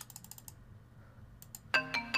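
A quick run of computer clicks, with two more about a second and a half in; near the end a rap instrumental beat starts playing back with steady pitched notes, as recording begins.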